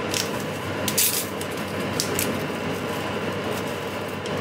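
Short rustles and light clicks of a tea bag and its paper packaging being handled, a few times, over a steady background hiss.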